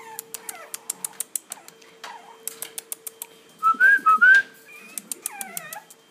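French Bulldog puppies whining and squealing in high, whistle-like cries, loudest in a short run about four seconds in, with fainter whimpers near the end. Throughout, rapid sharp clicks of claws and paws on the wire crate, over a faint steady hum.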